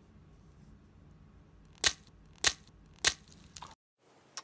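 A painted eggshell being cracked by hand: three sharp cracks about half a second apart in the second half, then the sound cuts off suddenly.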